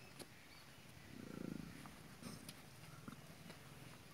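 A zebu bull gives one short, low, rumbling grunt about a second in. A few faint clicks sound around it.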